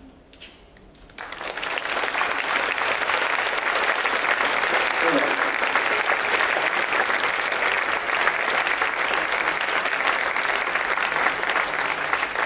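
Audience applauding: the clapping breaks out suddenly about a second in, after a brief hush, then carries on steadily.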